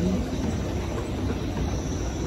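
Thyssen escalator running: a steady low rumble and hum from the moving steps and drive, heard while riding on it.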